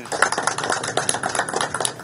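A small group of people applauding, many hands clapping in a dense, uneven patter.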